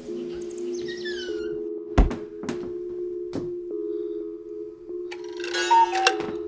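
Horror film score: a held, steady musical drone, with a heavy thud about two seconds in and a couple of lighter knocks after it, and a brighter, louder sound swelling near the end.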